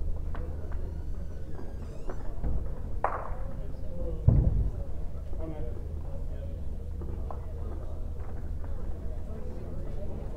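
Background murmur of voices in a large hall over a steady low hum, with one low thud about four seconds in.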